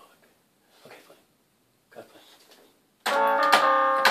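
Small electronic toy keyboard pawed by a dog: a cluster of several held notes sounds suddenly about three seconds in, with further notes struck over it.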